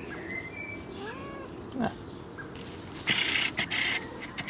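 Domestic cat giving a short meow about a second in. Near the end, loud close rustling as something brushes the microphone.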